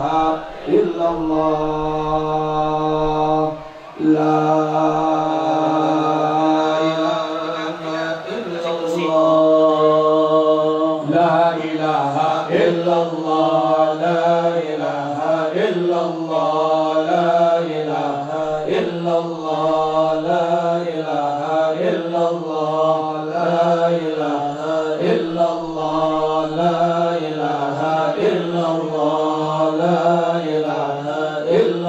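Men chanting Islamic dhikr over microphones. It opens with long, drawn-out notes with a brief break near four seconds; from about eleven seconds it becomes a quicker chant that rises and falls in a steady rhythm.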